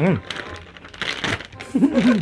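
Crinkling of metallised plastic snack packets as hands pick one up from a pile and grip it, an irregular crackle between a short hummed "hmm" at the start and another voice sound near the end.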